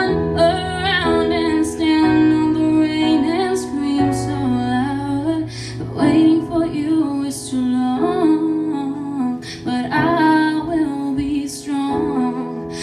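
A woman singing a slow song live while accompanying herself on an electronic keyboard, its held low chords changing about every two seconds.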